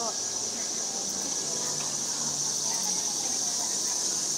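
Steady high-pitched insect buzz running without a break, with faint voices of people talking underneath.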